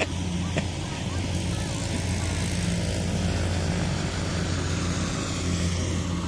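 Diesel engine of a Kubota combine harvester running steadily: an even, low hum that does not change.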